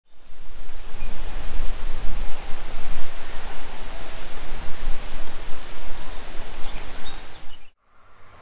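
Wind buffeting the microphone outdoors: a loud rushing noise with a gusting low rumble. It cuts off abruptly near the end.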